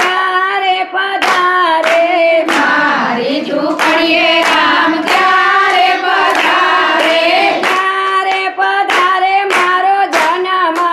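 Women singing a Gujarati devotional kirtan together, with hand claps keeping time about twice a second.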